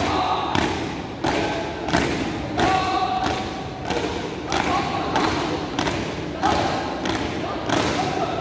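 A marching squad's shoes stamping in unison on a hard floor, a sharp echoing stamp about one and a half times a second, keeping step.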